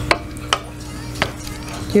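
Three sharp knocks on a hard surface: one at the very start, one about half a second later, and one a little past a second in.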